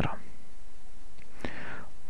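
A short pause in a man's speech: steady low hum and hiss from the microphone, with a brief breath about one and a half seconds in.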